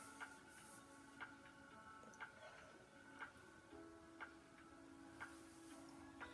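Near silence with a faint, regular ticking about once a second, over faint music.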